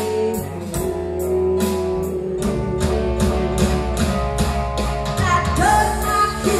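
Live band playing a country-rock song: a female lead vocal over electric guitar, bass, keyboard and a drum kit keeping a steady beat.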